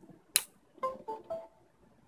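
A sharp click from a toggle switch, then the Windows device-connected chime from the Acer Iconia W4-820 tablet's speaker: three short notes stepping down in pitch, the sign that the tablet has recognised the USB flash drive plugged in through the OTG adapter.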